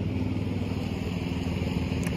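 Lawn mower engine running steadily.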